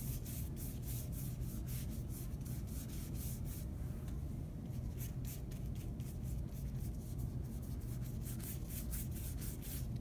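Large paintbrush swishing back and forth across paper while wet paint is blended, a run of short scratchy strokes, two or three a second, with a brief pause midway.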